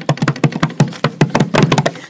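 Rapid, irregular tapping and clicking, several taps a second, over a steady low hum.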